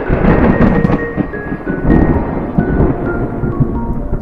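Title music, a melody of short separate notes, laid over rolling thunder that swells loud about a quarter second in and again around two seconds in.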